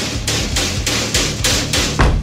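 Background music with a quick, steady percussive beat, about four hits a second, over a low bass line.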